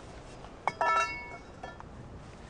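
A single metallic clink about two-thirds of a second in, ringing with several high tones for about a second before fading.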